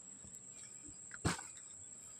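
A mesh net bag full of freshly caught tilapia set down on dry ground with a single thud about a second in, over a faint, steady, high-pitched insect drone.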